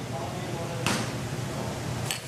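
Steady low hum of a commercial kitchen, with one brief soft knock about a second in.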